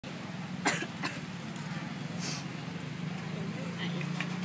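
Busy outdoor-table ambience with a steady low hum and voices in the background. Two sharp, short sounds come under a second in and at about one second, and there is a brief hiss just after two seconds.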